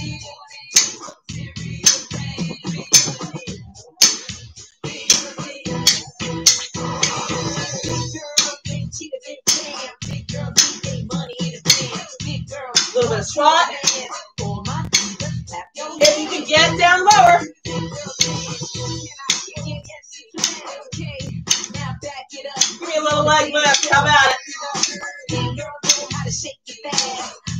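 Upbeat workout music with a steady beat and singing in places, with sharp clicks of lightweight exercise drumsticks (Ripstix) being struck in time with it.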